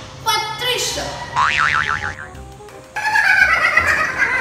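A cartoon-style boing sound effect, its pitch wobbling rapidly up and down for under a second, set between short bursts of voice.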